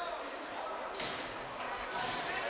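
Hockey-rink ambience: faint, distant voices echoing in the arena, with a single sharp knock about a second in.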